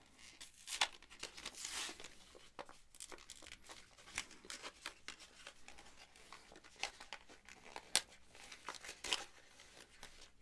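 Close handling noises: irregular rustling and crackling with many small sharp clicks, the sharpest a little under a second in and about eight seconds in.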